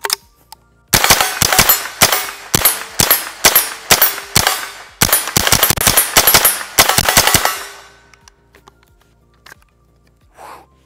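Smith & Wesson M&P 15-22 .22 LR semi-automatic rifle fired rapidly, about four shots a second for some six seconds, roughly two dozen shots in all, then stopping. The string runs through without a malfunction.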